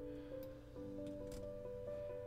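Quiet background music: soft held notes that change every fraction of a second.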